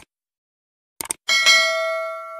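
Two short mouse-click sound effects about a second apart, then a bell chime struck once, ringing on and slowly fading: the sound of a subscribe button and notification bell.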